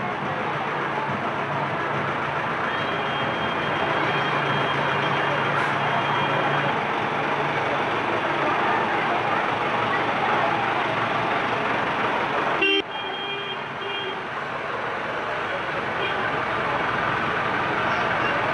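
Street din of a procession: a crowd's chatter over a running vehicle engine, with two spells of a high, broken beeping tone. The sound breaks off abruptly about thirteen seconds in and picks up again.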